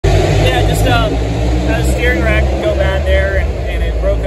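A man speaking into a close microphone over a steady low rumble from the garage surroundings.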